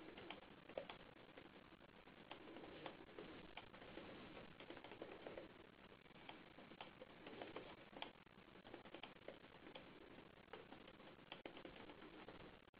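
Near silence on a dropped conference-call audio line: faint murmuring line noise with scattered soft clicks, while the speaker's connection is lost.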